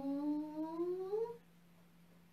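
A woman's voice holding a long, drawn-out "hang", the inhale cue of a qigong hang-ha breathing sequence, rising steadily in pitch and stopping about a second and a half in. A low steady hum runs underneath.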